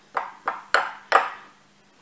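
Metal spoon stirring a crumbly oat and nut mixture, clinking against the glass bowl three times with a brief ring after each.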